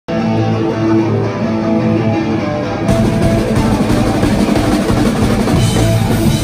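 Live punk rock: electric guitar playing ringing chords, then drums and the full band come in about three seconds in, with loud cymbals.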